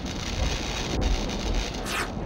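A thunder-and-rain style sound effect: steady crackling, rumbling noise with a short swish near the end.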